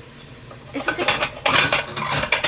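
Clinking and scraping of a utensil against a small glass dish handled close to the microphone, in a quick run of clicks that starts about three quarters of a second in.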